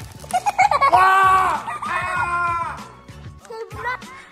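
Background music with a steady beat, and a voice crying out twice in long drawn-out shouts, about a second in and again about two seconds in, each falling away at the end.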